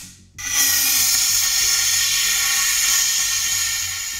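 Compressed CO2 released from a small cartridge into a glass jar: a steady high hiss with a faint whistle that starts about half a second in and slowly fades near the end as the gas runs out.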